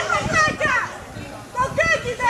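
Several people shouting and yelling in short, high-pitched cries. There is a brief lull midway.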